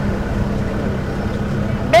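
Steady low mechanical hum and rumble of a shopping-mall interior, with a constant tone in it and a moving escalator close by. A woman's voice starts right at the end.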